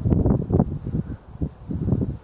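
Wind buffeting the microphone, a low, uneven rush that swells and dips in gusts.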